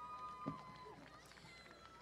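Quiet outdoor lull with a faint held whistle-like tone for about a second and a half and a soft knock about half a second in.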